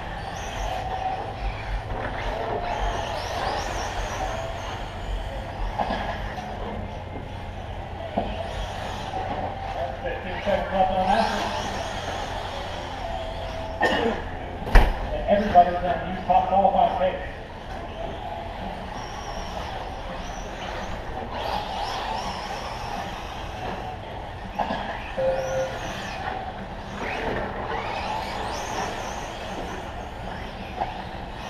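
Indistinct voices of drivers and onlookers over radio-controlled short course trucks running on a dirt track, with a sharp knock about fifteen seconds in.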